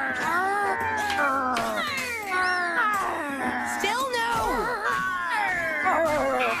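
Cartoon characters' wordless cries and wails, sliding up and down in pitch, one wavering near the end, over film-score music.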